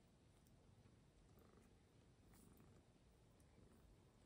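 Near silence: faint low room rumble with a few soft clicks.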